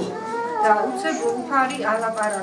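A woman speaking at a steady pace in short phrases, interpreting the Russian sermon into Georgian.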